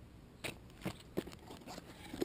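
Cardboard and paper packaging handled as a clutch is set into its box: a few short crackles and clicks spread through the two seconds.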